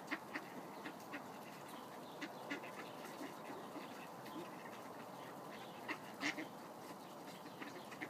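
A flock of mallards feeding frantically on scattered seed: a faint, constant patter of quick bill pecks and taps, with scattered soft quacks among them.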